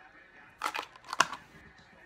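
Clear plastic clamshell lure package being handled: a few short plastic crinkles and clicks about half a second in, then a sharp click just past one second.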